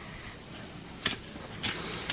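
Faint steady outdoor background noise, with a single click about a second in and a short hiss near the end.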